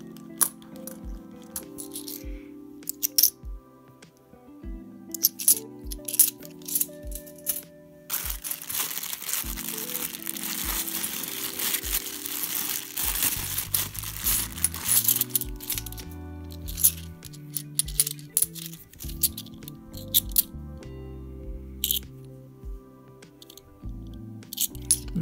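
Background music with a steady beat over bimetallic £2 coins clinking together as they are handled and sorted. For several seconds in the middle, a plastic coin bag crinkles loudly.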